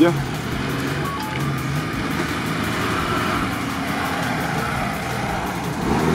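Engines of off-road 4x4s, a Suzuki Vitara and a Lada Niva, running at steady moderate revs as they drive through the mud and grass of the course.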